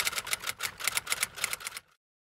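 Typewriter keystroke sound effect, a quick even run of clacks at about seven a second. It accompanies on-screen text being typed out and stops abruptly near the end.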